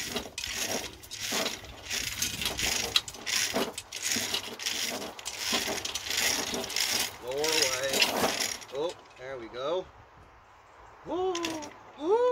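Steel lifting chain rattling and clinking in quick, irregular clatters as a suspended Nissan Leaf electric motor and gearbox is lowered and jostled into place. The clatter eases off about three-quarters of the way through. A few short, wavering voice-like calls come in the second half.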